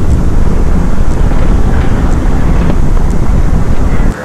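Loud, steady low rumble of wind and road noise from a car driving at highway speed, with wind buffeting the microphone.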